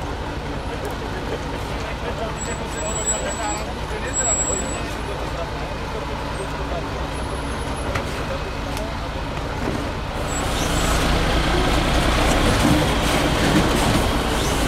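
A MAN 6x6 trial truck's diesel engine running at low, steady revs as the truck crawls over rocks. The engine grows louder about ten seconds in, as the truck comes close.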